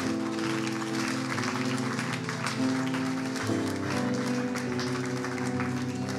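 Soft live worship-band music: electric bass and acoustic guitar holding long, sustained chords, moving to a new chord about halfway through.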